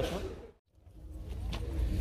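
Outdoor background noise fading out to a moment of total silence about half a second in, then fading back in as a low, steady rumble that grows louder toward the end.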